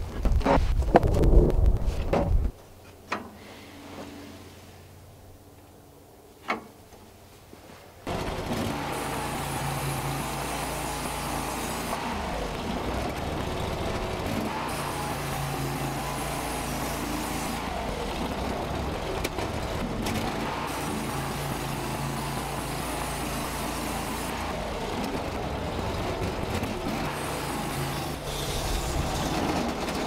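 Fresh-sawn oak boards clattering as they are thrown onto a stack of boards on tractor forks, then a few light knocks. About eight seconds in, the portable bandsaw sawmill's gasoline engine starts up suddenly and runs steadily with a low hum that swells every few seconds, until it cuts out near the end because it has run out of gas.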